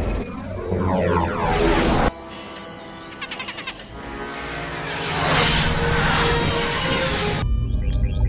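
Film soundtrack: music mixed with spaceship sound effects. Gliding sweeps give way to a sudden cut about two seconds in, then steady musical tones and a swelling rush of noise that stops abruptly shortly before the end.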